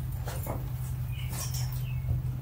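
A steady low electrical hum, with a few faint short high squeaks and soft rustles over it.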